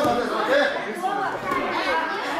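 Several voices talking and calling out over one another: spectators' chatter in a large hall, no single voice clear.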